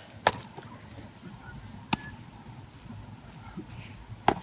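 A baseball smacking into a leather glove, a game of catch: two sharp pops about a second and a half apart.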